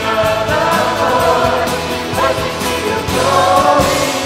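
A worship team singing a contemporary worship song together, several voices with acoustic guitar and band accompaniment.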